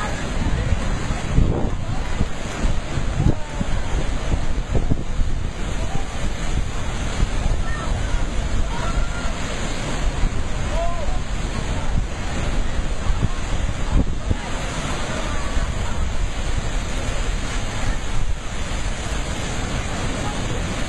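Heavy ocean surf breaking over lava-rock ledges and pouring into a rock pool: a continuous rush of churning water with irregular louder surges.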